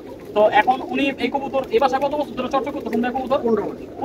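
Domestic pigeons cooing in a loft, with men talking over them.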